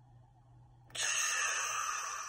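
A woman's long exhale blown out through pursed lips, starting suddenly about a second in after a held breath and trailing off slowly; this is the release after the breath-hold in a four-part breathing exercise.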